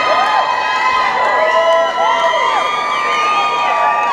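Concert audience cheering and screaming, with many high voices overlapping in rising and falling shouts at a steady, loud level.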